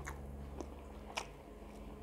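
A person chewing a mouthful of rice and chicken close to a lapel mic: faint wet mouth clicks, three of them, the loudest a little over a second in, over a steady low hum.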